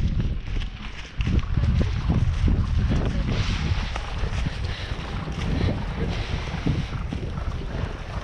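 Wind buffeting the camera microphone of a moving rider, a steady low rumble, with the ridden horse's hoofbeats thudding irregularly on wet turf.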